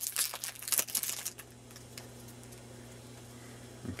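Foil booster-pack wrapper crinkling and tearing as it is pulled open: a rapid run of crackles that stops about a second and a half in, leaving only a low steady hum.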